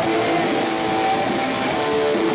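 Live rock band playing, with a loud distorted electric guitar holding sustained chords over the band.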